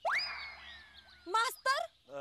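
A comic sound effect: a whistling tone that swoops sharply up, then glides slowly down for about a second before fading.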